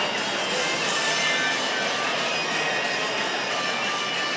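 Steady din of a busy exhibition hall: indistinct crowd chatter blended into a constant wash of noise.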